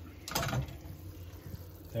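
Lemon-and-wine pan sauce simmering quietly around chicken cutlets in a frying pan on a gas stove. About half a second in there is a short voice sound together with a light clink.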